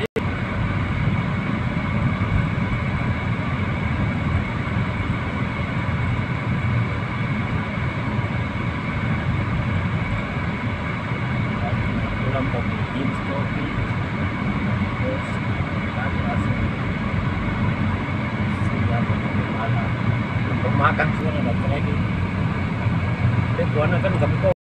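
Steady road and engine rumble heard from inside the cabin of a moving car, holding an even level throughout.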